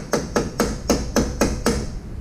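Rapid, even mallet blows on the rear wheel hub of a 2022 Ural motorcycle, about eight sharp knocks at roughly four a second, working the rear wheel loose for removal.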